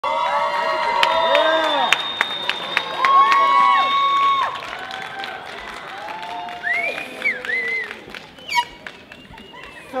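An audience cheering, with many high-pitched shouts and whoops overlapping and some scattered clapping. It is loudest in the first half and dies down toward the end.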